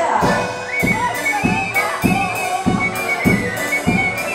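Live folk band playing an instrumental tune: accordion over a steady bass-drum-and-cymbal beat, with a high melody line on top.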